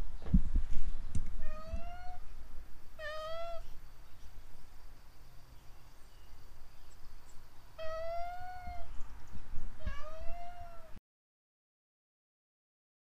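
A domestic cat meowing four times, each meow a short pitched call under a second long, with low knocks of handling in the first second or so. The sound cuts off suddenly near the end.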